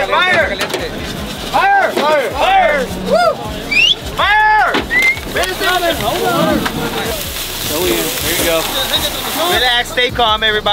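A crowd of people talking and shouting over one another, with one loud, drawn-out shout about four and a half seconds in.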